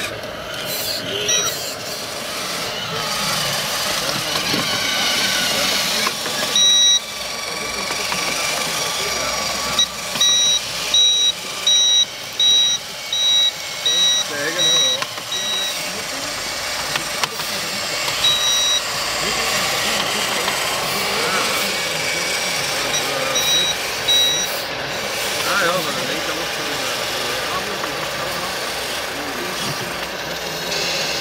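Electronic reversing beeper of radio-controlled model work vehicles, sounding in runs of evenly spaced high beeps, about two a second, that start and stop several times.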